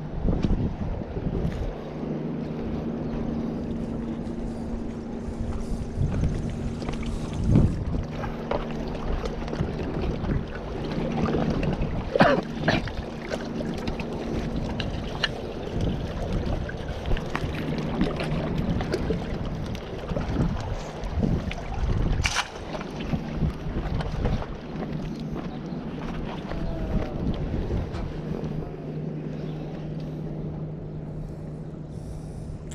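Wind buffeting a body-worn camera microphone over shoreline surf, with a steady low hum underneath. Scattered footsteps and handling knocks on rock, the sharpest a few seconds apart near the middle.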